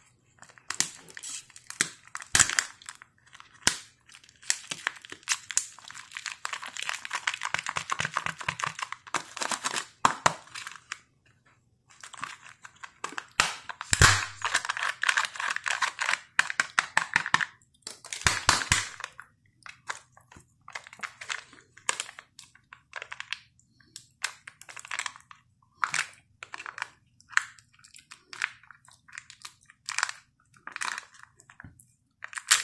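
Kinder Joy eggs being unwrapped by hand: plastic-foil wrappers and foil seals crinkling and tearing in long stretches, then in shorter scattered crackles. A few sharp plastic clicks come through, the loudest about halfway.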